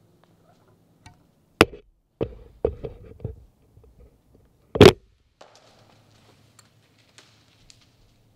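A bow handled in a treestand: a sharp click and several dull knocks as it is taken up and readied, then about five seconds in, the loudest sound, a single sharp crack as the bow is shot, followed by faint rustling.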